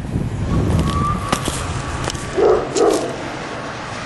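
A dog barks twice in quick succession, a little past halfway through, over a low rumble and a few faint clicks.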